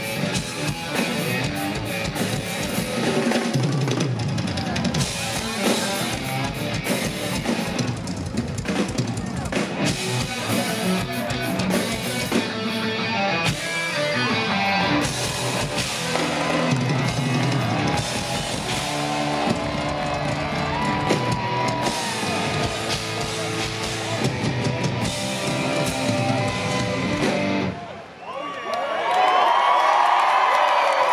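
Live rock drum duel on full drum kits: bass drum, toms and cymbals played hard over the band's backing, loud and continuous. Near the end the playing drops out abruptly and the crowd cheers and whoops.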